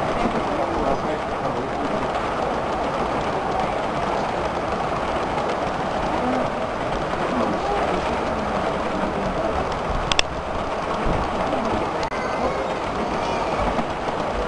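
Model freight train rolling past on a layout, a steady rattle of wheels on the rail joints, with one sharp click about ten seconds in.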